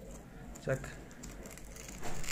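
Masking tape being peeled slowly by hand off a leather vest: faint crinkling and rustling of the paper tape.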